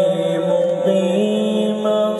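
A man's voice reciting the Qur'an in the drawn-out melodic tilawat style, holding one long note that steps up to a higher pitch about a second in.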